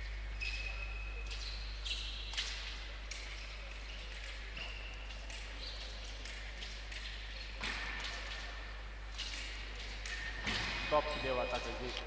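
Fencing bout on a piste: scattered light clicks and taps from footwork and blades, with a few short high squeaks, over a steady low electrical hum. A man calls "stop" near the end, halting the action.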